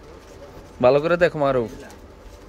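A man's voice: one short, drawn-out utterance of about a second, starting a little under a second in, over low background noise.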